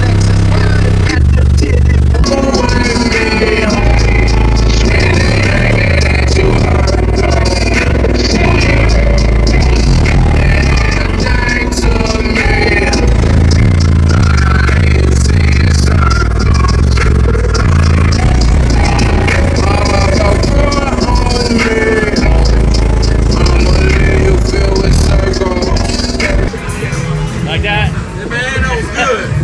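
A song with vocals played very loud through a car audio system of eight Sundown Audio ZV4 18-inch subwoofers on a single Crescendo 17,000-watt amplifier, heard from inside the truck cab, with deep bass notes dominating. The volume drops about two seconds before the end.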